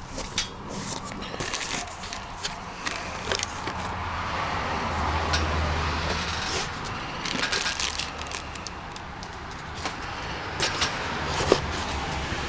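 Cardboard shipping box being handled and opened: a string of clicks, scrapes and rustles as the flaps are worked open. A low rumble swells and fades in the middle.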